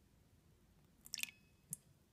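Vanilla extract being poured from a small glass bottle into a steel mixing bowl: faint, with a short cluster of sharp clicks about a second in and a single click near the end.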